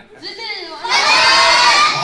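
A group of children and adults shouting together, starting with a few rising voices and swelling about a second in to a loud, held group cheer.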